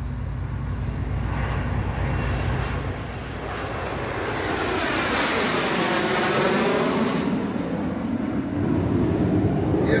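Fixed-wing aircraft flying low overhead: a rumble builds into a rush of engine noise, sweeps through its loudest pass about six seconds in, then fades away.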